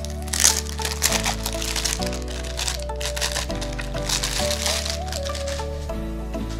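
Clear plastic wrap crinkling and crackling as it is peeled off a leather card wallet, loudest about half a second in and dying away near the end. Background music with a steady bass plays throughout.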